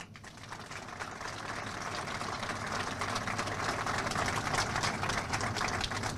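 Crowd applauding, a dense patter of many hands clapping that builds gradually over the first couple of seconds and then holds steady.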